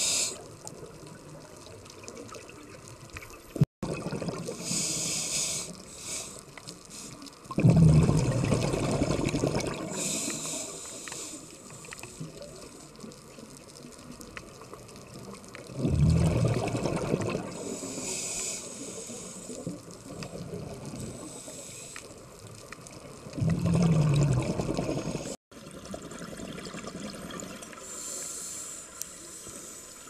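Scuba diver breathing through a regulator underwater: short hissing inhalations alternate with louder, low bursts of exhaled bubbles, three exhalations several seconds apart.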